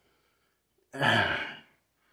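A man sighs once, about a second in: a single breathy exhale with a little voice in it.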